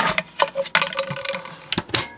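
Hard plastic clicking and knocking as the mini spin dryer's slotted inner plate is set on top inside the spin basket and the lid is handled: a quick string of sharp taps and clicks.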